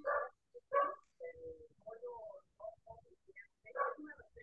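A person's voice murmuring quietly in short, broken fragments over a video call, like someone half-saying words while working out a sentence.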